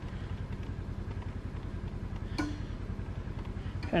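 An engine running steadily at idle, a low, even throb.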